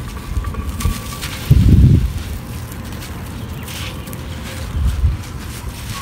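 Strong wind buffeting the microphone, with one loud gust about one and a half seconds in. Under it come faint gritty crackles as a lump of soft red clay brick is crushed in the hand and falls as dust.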